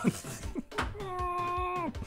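Laughter, then a drawn-out high-pitched vocal cry held for about a second that drops in pitch at its end.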